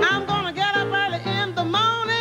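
Blues harmonica solo with notes bent up and down, over a blues piano accompaniment.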